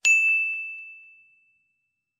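Notification-bell ding sound effect: one bright bell strike that rings on a single clear tone and fades away within about a second and a half.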